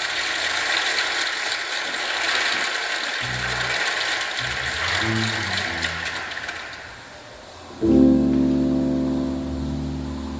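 Audience applause that dies away over the first seven seconds, with a few low bass and keyboard notes under it. About eight seconds in, the band starts a song with a loud, sustained electric keyboard chord over bass.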